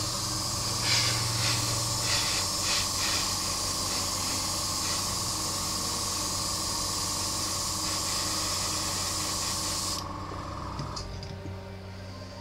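Airbrush spraying paint in a steady high hiss, fluttering in a few short pulses between one and three seconds in, then cutting off about ten seconds in.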